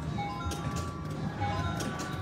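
Wheel of Fortune 3D video slot machine playing its electronic spin sounds while the reels turn: a string of short, held beeping tones that step between a few pitches, over a steady low hum.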